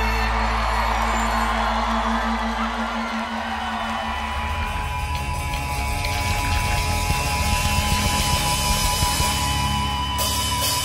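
Live band music: a held chord over a steady low bass note for about the first three seconds, then a denser, rougher passage with a high note held through the rest, and audience shouts mixed in.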